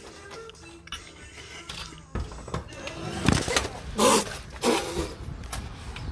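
Background music, then from about two seconds in a run of loud bangs and scuffling with short yells as a flour bomb goes off on a man coming through a door.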